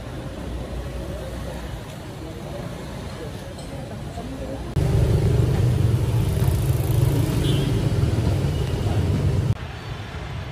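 Street ambience of background chatter and road traffic. About five seconds in it jumps to a much louder, steady low engine rumble that stops abruptly shortly before the end.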